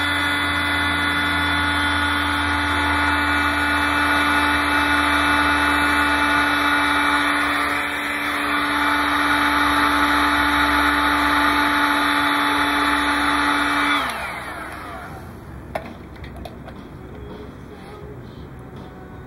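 Hot air gun running: a steady fan-motor whine over rushing air, dipping briefly about halfway through. It is switched off about four seconds before the end, and its whine falls away as the fan spins down. A single click follows shortly after.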